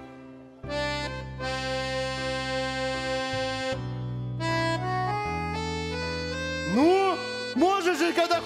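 Piano accordion starting about half a second in with held chords over steady bass notes, then a melody line climbing step by step.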